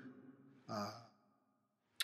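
Near silence, broken about halfway through by a man's short, hesitant spoken "uh".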